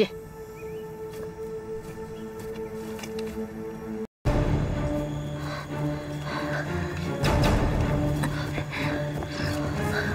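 Tense drama-score background music: quiet held notes at first, a brief gap about four seconds in, then a louder, fuller passage over a low sustained drone.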